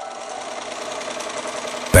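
Sewing machine running steadily at speed, a fast, even stitching rattle. Faint chime tones linger under it.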